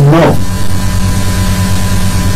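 Loud, steady electrical mains hum and buzz on the recording, running unchanged through a pause in the talk. A spoken word at the very start.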